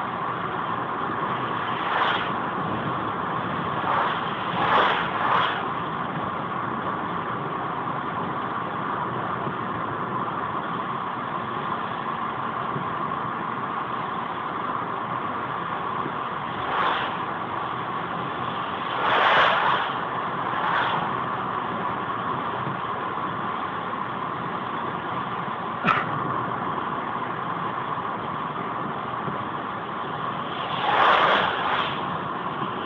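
Steady engine and tyre noise from inside a car cruising on a highway at about 75–85 km/h. Brief rushing swells come as oncoming trucks and cars pass, several times, the loudest about two-thirds through. There is one sharp click a little later.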